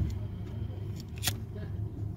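A vehicle engine idling with a steady low hum, and one sharp click a little over a second in.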